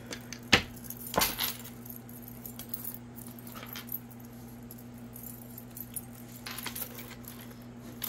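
Tarot cards being handled: two short taps about half a second and a second in, then soft rustling, over a steady low hum.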